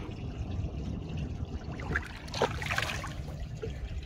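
Water splashing and trickling as a small snook is held at the surface and released, with a few louder splashes past the middle, over a steady low rumble.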